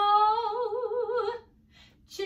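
A woman singing one long held note with a wide vibrato, unaccompanied. The pitch steps up just after the start, and the note stops about one and a half seconds in.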